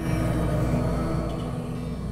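Low, sustained ominous drone from a horror film trailer's soundtrack, fading slowly.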